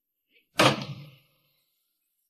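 A door slamming shut: one sharp bang about half a second in that dies away within about half a second.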